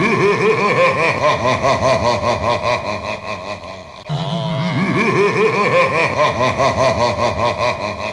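A deep, drawn-out evil laugh sound effect, repeated "ha-ha" pulses in two long phrases, the first dying away about halfway through and the second starting straight after.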